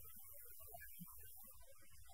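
Near silence: a low, steady hum with faint room noise.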